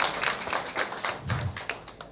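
An audience clapping, thinning out and dying away near the end.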